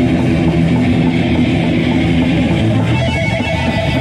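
Heavy metal band playing live, loud distorted electric guitars strummed over bass, with held guitar notes coming in about three seconds in.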